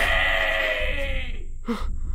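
A long, high-pitched scream-like cry, held for about a second and a half and falling slightly in pitch before it stops.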